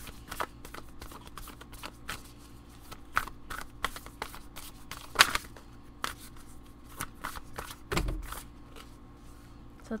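An oracle card deck being shuffled by hand: a steady patter of soft card clicks and flicks, with a louder snap about five seconds in and a low thump near eight seconds, as cards are worked loose from the deck for the last draw.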